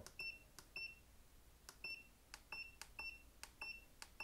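US-1011N digital weighing indicator beeping as its keypad buttons are pressed: about eight short, identical high beeps, unevenly spaced, each with a light button click, as a calibration weight value is keyed in.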